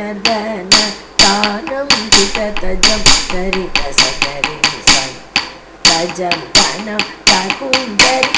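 Nattuvangam: a wooden stick (tattukazhi) struck on a wooden block (tattu palagai), sharp knocks about two a second in an uneven rhythmic pattern that keeps the beat for the dance, over a melody and a steady drone.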